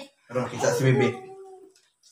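A short wordless vocal sound from a person, lasting about a second and fading out.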